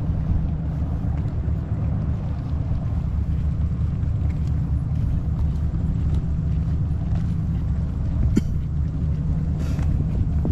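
Steady low rumble of outdoor background noise, with a brief click about eight seconds in and a short hiss near the end.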